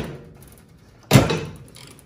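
Microwave oven door shutting with a single sharp clunk about a second in, which then fades.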